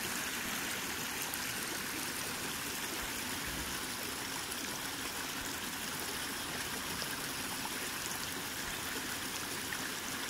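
Shallow stream water flowing steadily over a smooth, sloping rock slab.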